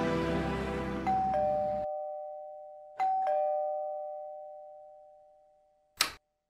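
Electronic doorbell chiming a two-note ding-dong, high then lower, rung twice about two seconds apart, each chime fading slowly. Background music plays under the first ring and stops about two seconds in, and a brief sharp click comes at the very end.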